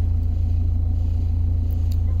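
An engine running steadily at idle: an even, unchanging low hum.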